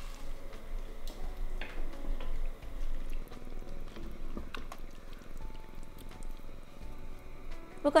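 Wooden spoon stirring thick beans and sauce in an enamelled cast-iron Dutch oven, with a few light knocks of the spoon against the pot, over faint background music.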